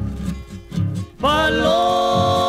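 Paraguayan folk ensemble of harp and acoustic guitars keeping a plucked bass-and-strum rhythm. A held vocal harmony breaks off at the start, leaving about a second of the plucked accompaniment alone, then a new held chord of voices slides in.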